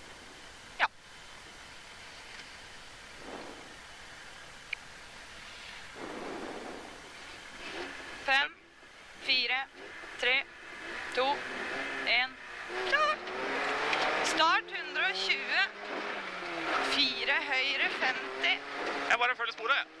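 Rally car engine idling quietly, then revved in short repeated blips from about halfway through. Near the end the car launches and accelerates hard, the engine pitch rising and dropping with the gear changes.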